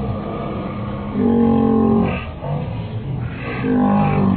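A man's voice letting out a long, steady yell about a second in, then a shorter rising one near the end, over the murmur of a festival crowd.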